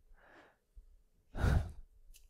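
A man's breathing picked up close by a headset microphone: a faint breath near the start, then a louder, noisy exhale about a second and a half in.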